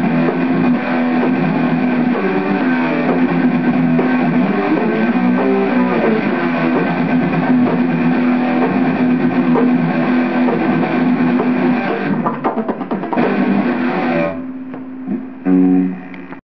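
Guitar playing continuously. Near the end the playing drops back, and one last louder burst of notes comes just before it stops.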